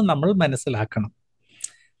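A man speaking Malayalam in a lecture for about a second, then a pause with one short, faint click.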